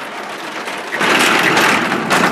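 Edited transition sound effect: a dense, rapidly rattling noise that builds and is loudest in the second half.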